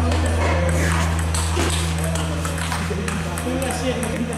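A celluloid/plastic table tennis ball making a series of light, sharp clicks as it bounces on the table and bats between points, over a steady low hum.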